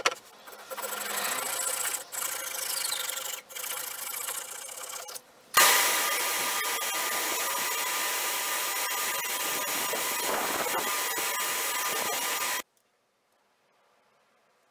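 A thin wooden wedge clamped in a bench vise is filed by hand in a few long strokes. Then a belt sander starts with a jolt about five and a half seconds in and runs steadily with wood pressed to its belt, cutting off abruptly shortly before the end.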